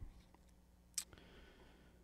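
Near silence in a small room, broken by one short, sharp click about a second in.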